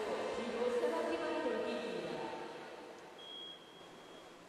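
A person's voice, echoing as in a large hall, fades away about two and a half seconds in, leaving a quiet hush. A faint, thin steady high tone sounds near the end.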